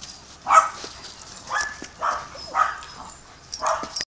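A dog barking at play: about five short barks, half a second to a second apart.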